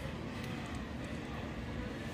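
Faint, steady background hum of a large store, with no distinct sounds standing out.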